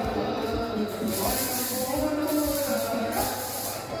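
Background music with a singing voice, with a high hiss that swells twice.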